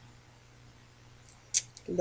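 Quiet room tone, then a few short clicks and rustles of a cardstock panel being handled and pressed down on a cutting mat near the end.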